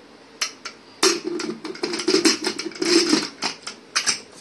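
Aluminium pressure cooker lid being fitted onto the cooker: a single metal click, then about two and a half seconds of dense metallic clattering and scraping.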